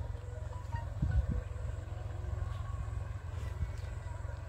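Wind rumbling on a handheld microphone, with a faint steady hum from a distant engine and a few soft thumps about a second in.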